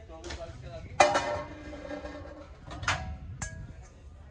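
Brass lid and brass container clinking together: one sharp metallic strike about a second in that rings on briefly, then two lighter clinks near the end.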